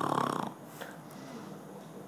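A woman under general anaesthesia after nose surgery gives a single snore-like breath lasting about half a second, followed by a faint background.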